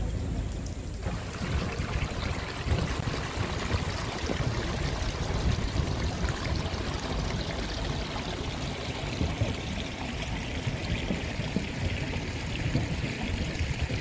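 Water of a small garden stream running and trickling over rocks, a steady rushing that starts about a second in, over a low rumble.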